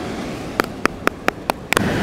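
Five quick, sharp taps on a plastic sandcastle mould, about four a second, over a steady hiss.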